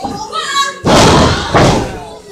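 A wrestler's body slamming onto the wrestling ring mat: a sudden loud thud about a second in, with a second impact about half a second later, over crowd voices.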